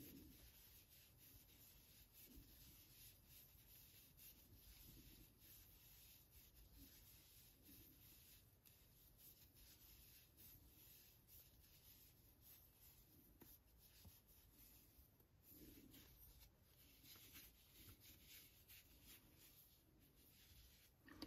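Near silence, with faint scattered rubbing and small ticks of yarn sliding on a double-ended crochet hook as loops are pulled through.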